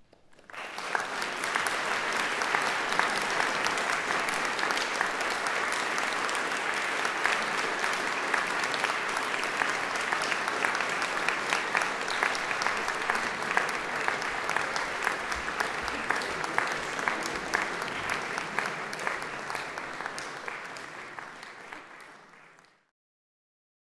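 Audience applauding steadily, many hands clapping at once. It starts about half a second in and fades away near the end.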